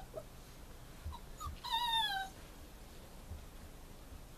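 A puppy whimpering: two short high yelps a little past a second in, then one drawn-out whine that slides down in pitch, lasting over half a second.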